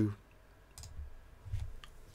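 A few short clicks of a computer mouse, spread over about a second.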